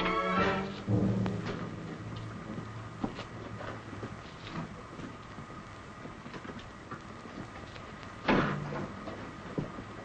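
Orchestral film score fading out just after the start, leaving a low held note for a few seconds, then scattered faint knocks and one loud thump about eight seconds in.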